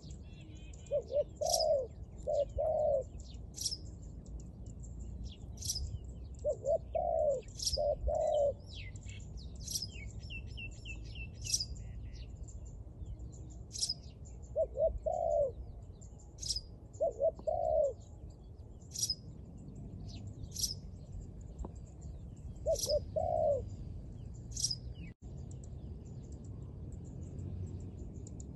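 Spotted dove cooing, five phrases of two to four low, soft notes a few seconds apart. Sharp, high chirps from another small bird come every second or two throughout.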